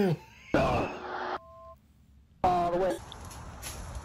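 Short vocal exclamations from a person, with gliding pitch, broken by a quiet gap that holds a brief steady two-note tone about a second and a half in. A faint background hiss follows near the end.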